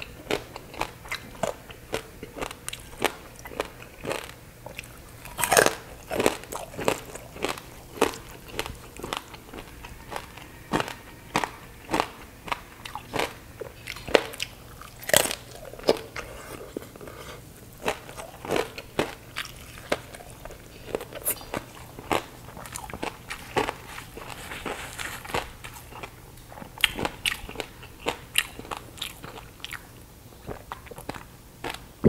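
Crackling skin of oven-baked pork belly being bitten and chewed close to the microphone: a dense run of sharp, irregular crunches between the chewing.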